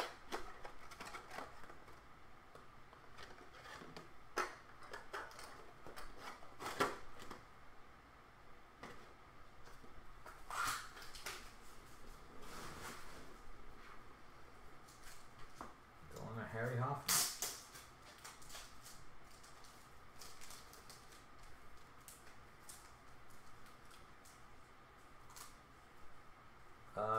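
Trading cards being handled in plastic sleeves and holders, with foil packs set down on the table: scattered rustles, crinkles and light clicks of plastic and foil.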